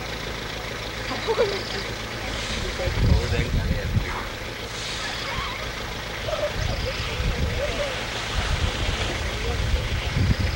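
Vehicle engine running steadily, with loud low rumbles on the microphone about three seconds in and again near the end. Faint voices can be heard.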